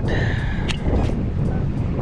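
Shimano Metanium DC baitcasting reel during a cast: a high whine from the spinning spool and its electronic brake, dropping slightly in pitch and stopping with a click about three-quarters of a second in. Steady wind rumble on the microphone underneath.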